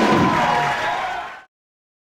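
Live music recording with crowd noise, sustained and gliding pitched notes over a noisy wash, fading out about a second in and cutting to silence about one and a half seconds in.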